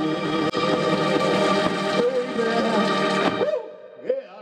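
Live soul band playing, led by an electronic keyboard with an organ sound, holding chords under a wavering melody line. The music stops about three and a half seconds in, leaving a short vocal sound near the end.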